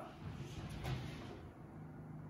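Quiet kitchen with faint movement noise and a low steady hum, as a built-in oven door is pulled open near the end.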